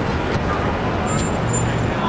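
Steady city street traffic noise, a rumble of passing vehicles, with a low engine hum coming in near the end.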